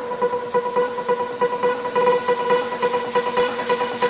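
Hard trance music in a stretch without the kick drum: a steady held synth tone with a fast pulsing rhythm over it.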